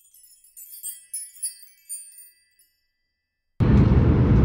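A sparkling chime effect: a quick run of high tinkling, bell-like notes lasting about two and a half seconds, then silence. Near the end a loud, steady rumble of a train cabin cuts in abruptly.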